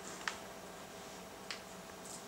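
Two short, sharp clicks about a second and a quarter apart over quiet room tone.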